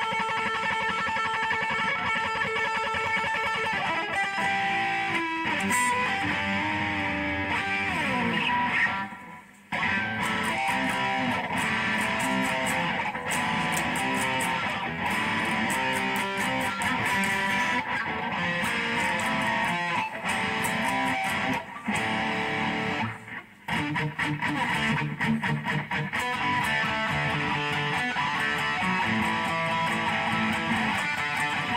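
Single-cutaway electric guitar being played, a run of riffs and held notes. About eight seconds in, a note slides down in pitch, followed by a short break; there is another brief break about twenty-three seconds in.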